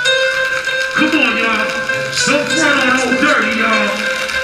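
A hip-hop track playing loudly over a concert PA, with a man's voice over the music from about a second in.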